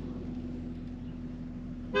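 Steady low drone of a vehicle, heard from inside the cabin, with one short car-horn toot just before the end.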